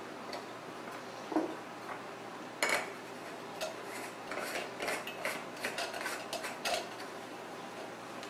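Stainless steel stovetop espresso maker being put together: a knock and a metal clink as the packed coffee basket goes into the base, then a run of small metallic clicks and scrapes as the top is screwed onto the base.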